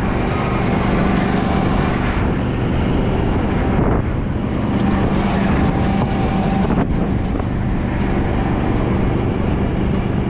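Fire brush truck driving across rough pasture: its engine drones steadily under wind noise buffeting the outside-mounted camera.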